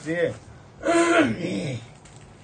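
A man's voice: a short sound at the start, then a louder, longer vocal sound about a second in, with no words made out.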